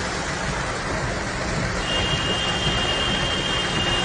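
Heavy rain and floodwater rushing down a street, a steady hiss, with cars driving through the water. About halfway in, a steady high-pitched tone starts and holds.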